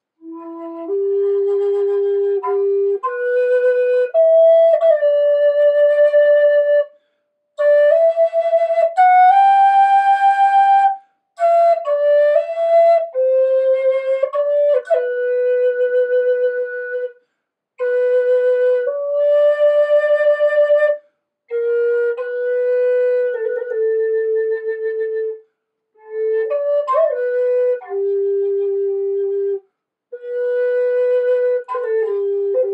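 Native American style flute of Alaskan yellow cedar in E4 minor, played solo: a slow melody of held notes with small grace-note turns, opening on its lowest note. It comes in about six phrases of a few seconds each, broken by short breath pauses.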